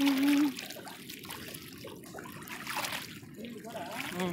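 Shallow seawater splashing and sloshing around feet wading through it: a continuous rush of small splashes.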